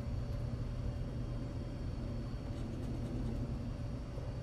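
Steady low hum with a hiss underneath, and a few faint scratches of a coin on a lottery scratch-off ticket between about two and a half and three and a half seconds in.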